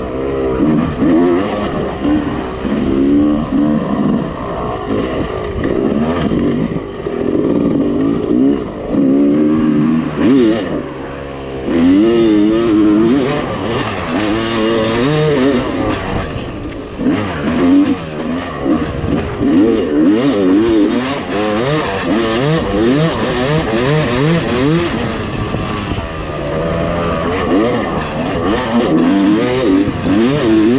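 Yamaha YZ250 two-stroke single-cylinder dirt bike engine being ridden, its revs rising and falling over and over as the throttle is worked through the gears, with a brief easing off about eleven seconds in.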